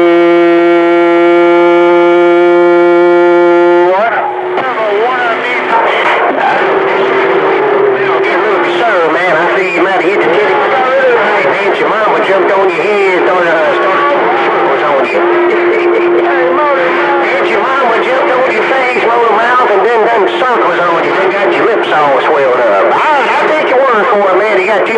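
CB radio speaker receiving skip: a steady horn-like tone holds for about four seconds and cuts off, then several distant stations talk over one another in a garbled jumble, with a faint steady whistle underneath.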